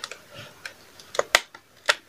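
A handful of light, sharp clicks and taps from hands handling a cardboard advent calendar, the loudest about a second and a half in.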